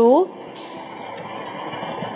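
Spiced tea simmering in a steel saucepan on a gas stove, a steady bubbling hiss, with a brief sizzle about half a second in as a spoonful of sugar goes into the boiling tea.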